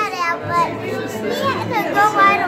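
Children's voices talking and calling out among other people talking.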